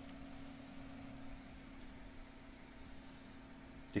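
Faint, steady hum of a running desktop computer and its hard drive, a low steady tone over a soft hiss.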